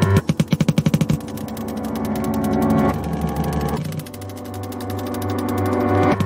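Electronic music: sustained synthesizer chords over a low bass drone. A rapid stuttering burst of about ten repeated hits a second comes at the start, and the chords change twice as the loudness swells up.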